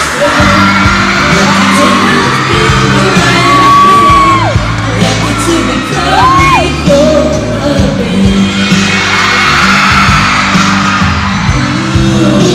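A man and a woman singing a pop love-song duet live into microphones over backing music, with fans screaming and whooping over it, including two long high screams near the middle.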